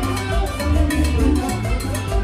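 Live band playing an upbeat Latin dance tune: a drum kit and timbales keep a steady, busy beat under electric guitar and a moving bass line.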